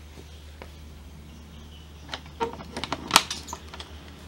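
A quick run of sharp metallic clicks and rattles starting about halfway through, loudest near the end: the small brass sliding bolt of a wooden, wire-mesh bird cage door being worked open.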